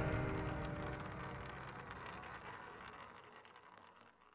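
The ringing tail of an intro music sting's final hit, fading steadily away to near silence.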